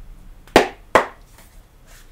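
Two sharp taps about half a second apart, the first the louder, from a tarot card deck being handled in the hands before a shuffle.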